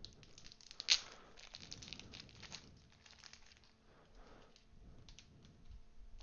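Foil Panini Prizm basketball retail pack wrappers crinkling and rustling as they are handled, with a sharper crackle about a second in.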